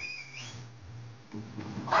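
A brief whistle-like chirp that steps up in pitch just after the start, then a low steady hum.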